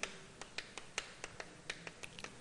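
Chalk writing on a blackboard: a quick, irregular series of faint taps and clicks, about a dozen in two seconds, as the strokes of the letters are made.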